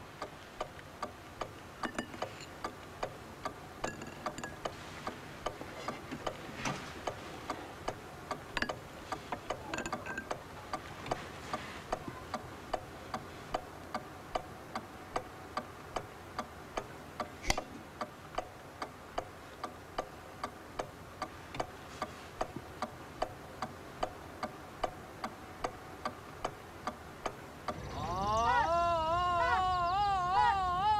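Old wooden-cased pendulum mantel clock ticking steadily, a few ticks a second, with one sharper click just past the middle. Near the end a louder, wavering pitched sound comes in over the ticking.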